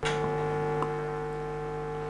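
Steady electrical hum and buzz of many tones from the chamber's microphone system, starting abruptly as a microphone comes on and easing slightly about a second in: interference in the microphone line, which someone in the room calls microphone feedback.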